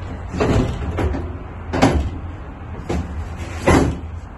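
Four clunks and knocks as a heavy object is shifted inside the back of a van's cargo area, the loudest near the end, over a steady low hum.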